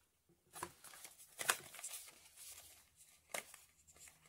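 A small cardboard product box being handled: a few quiet scrapes and rustles of paperboard, with three short sharp clicks about half a second, one and a half seconds and three seconds in.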